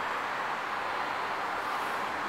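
Steady hiss of outdoor background noise, even and unbroken, with no engine note or sudden sound standing out.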